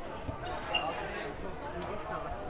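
Background chatter of voices in a large sports hall, with a few dull thuds of feet or bodies on the padded wrestling mats.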